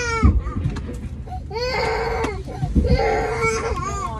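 A young child crying on board an airliner in long, high wails, two long ones in a row in the middle, over the steady low hum of the aircraft cabin.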